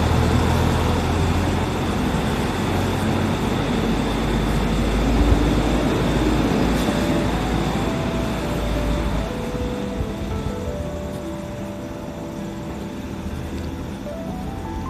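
A city bus's engine and road noise receding, with music of held notes coming in from about halfway through as the vehicle noise dies down.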